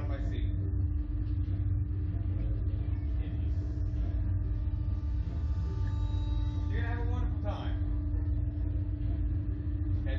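A steady low rumble with a constant hum from the Slingshot ride's machinery while the riders wait in the capsule before launch, with brief voices about seven seconds in.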